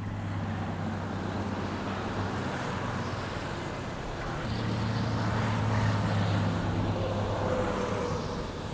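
Highway traffic: vehicle engines and tyre noise, swelling as a vehicle passes about five to six seconds in.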